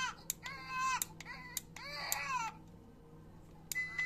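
Toy doll's built-in baby-cry sound effect: two short, high-pitched crying calls, with a few sharp clicks among them.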